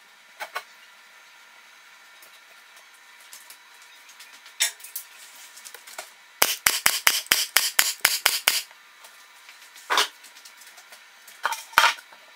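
Staple gun firing staples through upholstery fabric into a plywood chair shell: a few single shots, then a quick run of about a dozen shots in two seconds, then a few more singles near the end.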